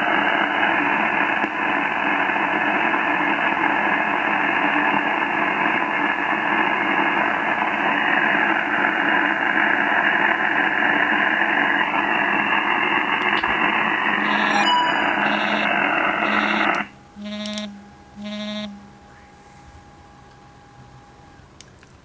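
Barrett 4050 HF transceiver's speaker on analog single sideband receive: a loud, steady hiss of band noise with no readable reply in it. The hiss cuts off suddenly about three-quarters of the way through, followed by a few short electronic beeps and a faint steady tone.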